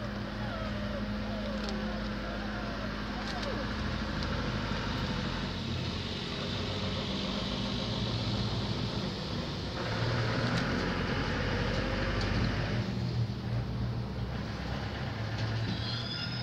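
A steady low mechanical hum under an even background noise.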